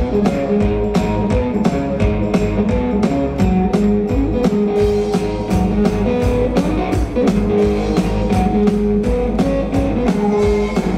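Live blues-rock instrumental: an electric guitar plays over a steady, even drum beat, with no singing.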